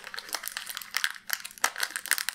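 Plastic crinkling and rustling with a quick, irregular run of small clicks, as small plastic parts or their packaging are handled by hand.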